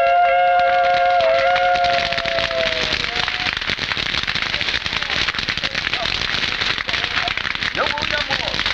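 A long held blast on a horn sags in pitch and fades out about three seconds in. It gives way to a wood bonfire crackling and popping densely.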